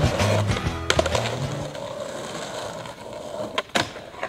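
Skateboard wheels rolling on rough concrete, with background music cutting off about a second in. Two sharp clacks near the end as the board pops up onto a low rail.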